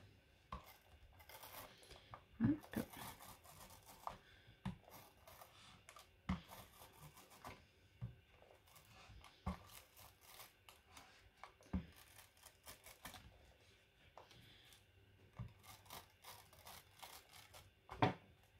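Dotted-adhesive tape runner pulled in short strokes along a thin cardstock die-cut, giving faint, irregular scrapes and clicks.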